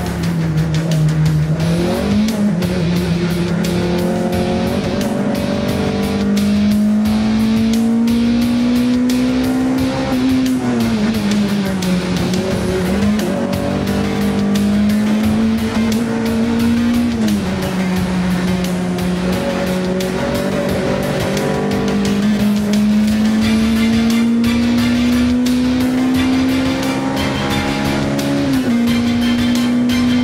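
Volkswagen Golf 3 16V race car's two-litre four-cylinder engine under hard racing load, heard from inside the cockpit. The pitch climbs steadily through each gear and drops sharply at the shifts and under braking, about four times.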